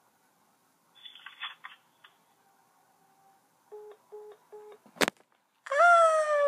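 A faint voice over a smartphone's speaker, then three short beeps from the phone as the call ends. A sharp click follows, and a loud shout starts near the end.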